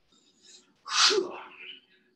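A man's short in-breath, then one sudden, explosive burst of breath about a second in that fades within about half a second.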